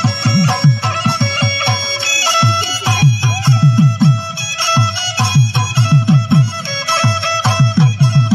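Assamese folk dance music: a fast, even run of low drum strokes, each dropping in pitch, under a high melody of held notes.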